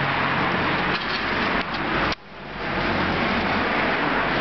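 Street traffic: cars running and passing on the road alongside, a steady rush of engine and tyre noise with a low engine hum. The noise drops suddenly about halfway through and builds back up over the next second.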